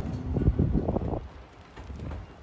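Wind buffeting the microphone as a low, uneven rumble, easing off after about a second.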